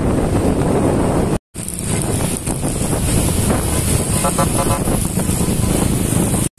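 Motorcycle engines running in a slow-moving convoy, heard from a moving motorbike with heavy wind rush on the microphone. The sound drops out briefly at a cut about a second and a half in. A short pulsing tone, like a horn, sounds about four seconds in.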